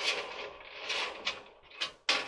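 Coiled wire heating element of a White-Westinghouse clothes dryer being pressed by hand into its stainless steel heater pan: light metallic scraping and rattling of the coil, with a short sharp click near the end.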